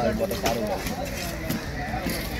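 Voices talking in the background, one of them with a drawn-out, bleat-like tone, and a faint knock of the cleaver on the wooden chopping block about one and a half seconds in.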